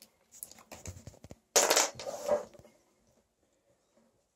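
Handling noise from a small framed whiteboard and a marker being picked up and set in place: a few light clicks and knocks, then a short rustling scrape a little past halfway.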